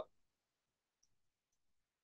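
Near silence: room tone, with two faint, short high clicks about a second in and half a second apart.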